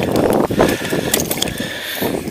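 Water splashing and a landing net being handled as a hooked trout is brought into the net, with short sharp splashes over a steady rush of wind on the microphone.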